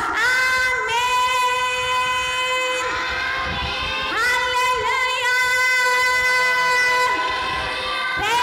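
A woman's solo voice singing a devotional praise song into a microphone, holding two long, steady notes of about three seconds each with a short break between them.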